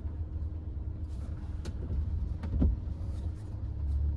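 Low, steady in-cabin hum of a Hyundai HB20's 1.6 four-cylinder engine idling in gear with the car at a standstill. A few short clicks or knocks break in around the middle, the loudest a little past halfway.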